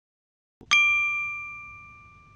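A single bright chime, a transition sound effect, strikes about two-thirds of a second in and rings with a few clear tones, fading away over about a second and a half as the lesson moves to a new section.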